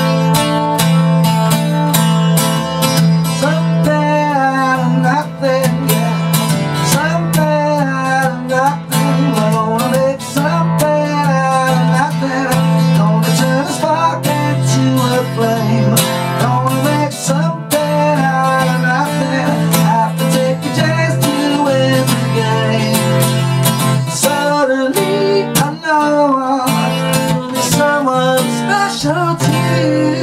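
Acoustic guitar strummed in steady chords, with a man singing the song's melody over it.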